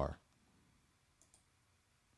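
Two faint computer mouse clicks in quick succession, a little over a second in.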